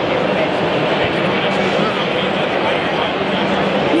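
Crowd babble in a large hall: many people talking at once, a steady wash of voices with no single speaker standing out.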